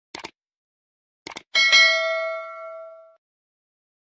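Subscribe-button animation sound effect: two quick mouse clicks, two more about a second later, then a bell ding that rings out and fades over about a second and a half.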